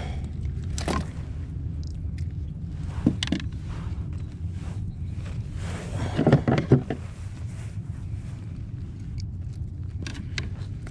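Handling noise as a bass is gripped by the lip and lifted from a rubber-mesh landing net in a kayak: a few sharp knocks and rustles, about a second in, about three seconds in and a cluster around six to seven seconds in, over a steady low rumble.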